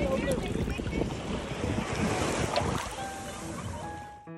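Shallow sea water washing at the shoreline, with wind buffeting the microphone; it eases off over the last second.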